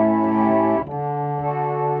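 Pump organ (foot-pumped reed organ) holding a sustained chord, which changes to a new chord a little under a second in.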